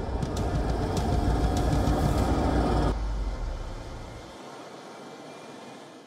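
A heavy six-wheeled military truck's engine running with a steady low rumble. It drops in level about three seconds in and fades to a faint hum near the end.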